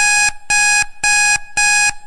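An electronic buzzer beeps loudly about twice a second, four harsh buzzing beeps in a row. It is a time-up alarm signalling that the talk has run out of time.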